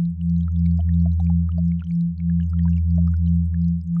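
Generated sound-therapy sine tones, binaural and isochronic: a deep steady hum with a higher tone pulsing on and off about five times a second. Faint, brief high pings are scattered over them.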